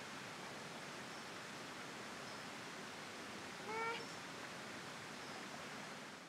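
A single short, slightly rising, mewing animal call about two-thirds of the way through, over steady outdoor background hiss. Faint, very short high peeps sound now and then.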